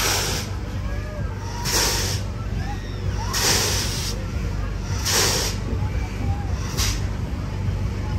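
Fairground kangaroo ride running: a steady low hum from its machinery, broken by a short burst of air hiss about every second and a half as the arms hop, five times in all.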